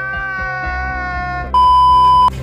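A man's drawn-out crying wail, then about one and a half seconds in a loud, steady test-pattern beep at a single pitch, the tone that goes with TV colour bars. Background music runs underneath.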